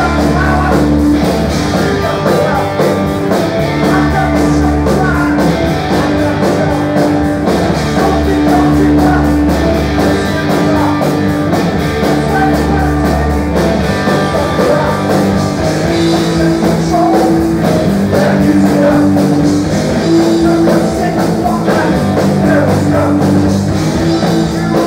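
Live rock band playing loudly: electric guitars, bass and a drum kit in a steady beat, with a singer's voice over them.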